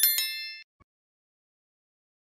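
Notification-bell chime sound effect: a bright ding struck twice in quick succession and ringing out for about half a second, followed by a faint click.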